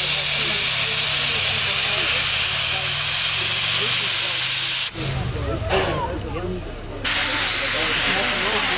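Steam locomotives venting steam: a loud, steady hiss that cuts out abruptly about five seconds in and starts again about two seconds later, with crowd voices underneath.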